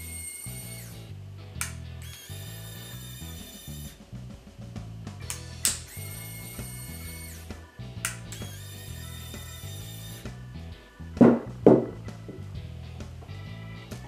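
Inline Nexus 1-inch-stroke micro linear actuator's small motor running in several separate runs of two to three seconds each as it extends and retracts under a full load of about 4.5 lb, slightly over its 4.4 lb rating, with no trouble. Two thumps come near the end. Background music plays throughout.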